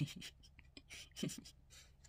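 A few short scratchy rustles and scrapes, the loudest at the very start and another just over a second in.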